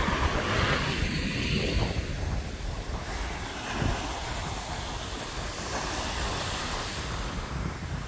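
Small surf washing up onto a sandy beach, with wind rumbling on the microphone.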